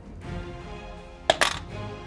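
Trouble board game's Pop-O-Matic dice popper pressed: a sharp pop and a quick rattle of the die inside its plastic dome, two clicks close together about a second and a half in, over background music.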